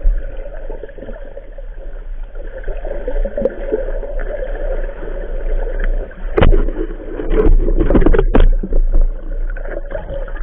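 Muffled underwater noise picked up by a camera held under the surface of a river, a steady dull rush of moving water. About six and a half seconds in there is a loud knock, followed by a cluster of louder knocks and rushes lasting a second or two.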